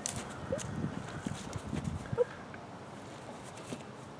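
Rottweiler puppy's paws and the handler's boots shuffling and stepping on dry grass: a run of soft, uneven scuffs and taps over the first two seconds, quieter after that.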